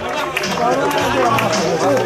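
Several voices talking and calling out over one another, loud and close, as players celebrate a goal on a football pitch.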